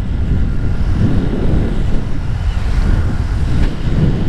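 Wind buffeting the microphone of a camera on a moving motorcycle: a loud, steady low rumble, with the motorcycle running underneath it.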